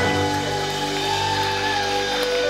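Live rock band's final chord ringing out: guitars and amplifiers hold steady sustained notes after the beat and vocals stop, the end of a song.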